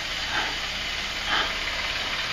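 Steady hiss of camcorder recording noise, with two short, breathy sounds from a frightened man's breathing.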